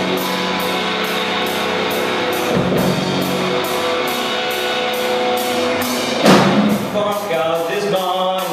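Live rock band playing an instrumental passage: electric guitar, bass and keyboard holding steady chords over a drum kit, with cymbal strokes about three a second and a loud crash about six seconds in.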